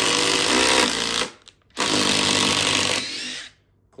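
Two Makita cordless impact drivers, a 40V XGT and an 18V, hammering together as they back long screws out of a wood round. They stop about a second and a quarter in, then run again for about two seconds, with a rising whine near the end before they cut off.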